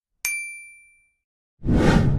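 Edited-in sound effects: a single bright chime strike that rings and fades over about a second, then near the end a louder, deeper whoosh-like swell of noise that opens the channel's outro card.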